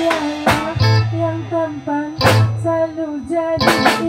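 A live band playing: electric guitar carrying a melodic line over bass notes and a drum kit, with a few drum hits spread through and a quick run of hits near the end.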